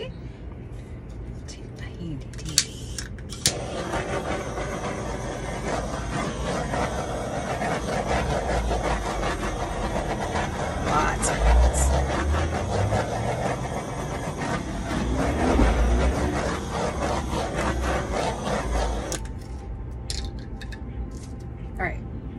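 Hand-held hair dryer blowing air across wet pour paint on a canvas: it switches on about three and a half seconds in, runs as a steady rush of air that swells as it is moved over the canvas, and cuts off about three seconds before the end.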